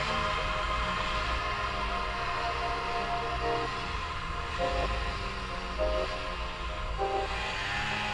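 Ski-Doo snowmobile engine running under way through snow, a steady rumble with a whine that rises and falls in pitch several times as the throttle changes.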